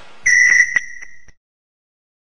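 A high, whistle-like tone held steady for about a second, with a few sharp clicks in it, cutting off abruptly.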